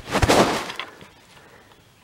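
A short, loud rustling crash with a thump about a quarter second in, over in under a second.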